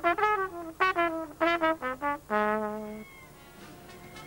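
Solo trumpet playing a quick jazz phrase of short notes, ending on a longer held note that stops about three seconds in.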